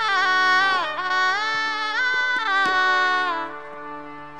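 Shehnai playing a gliding, ornamented melodic phrase in raag Alhaiya Bilawal over a steady drone. The phrase fades out a little past three seconds in, leaving only the drone.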